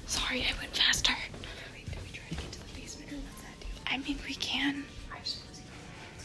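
A person whispering in short hushed bursts, once at the start and again about four seconds in.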